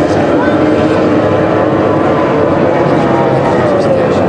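F2 racing powerboat outboard engine running flat out, a loud steady whine whose pitch dips slightly near the end.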